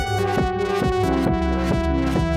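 Nord Lead 4 synthesizer playing a layered electronic patch: held chords over a low bass, with a steady pulse of short hits about four times a second. The chord changes about halfway through.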